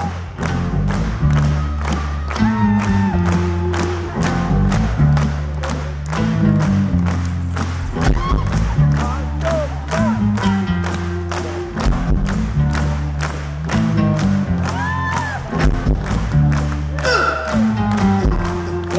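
Live soul band playing: a steady drum beat with bass and electric guitars.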